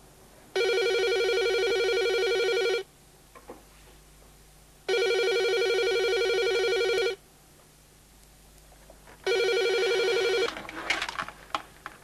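Corded desk telephone ringing with an electronic trill, three rings about two seconds long with pauses between. The third ring is cut short as the handset is lifted, followed by clicks and rustling of the receiver.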